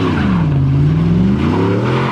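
A Chevy Silverado pickup's engine revving hard as the truck spins a smoky donut, with the tires spinning and squealing on the pavement. The engine pitch sags through the first second and climbs back up near the end.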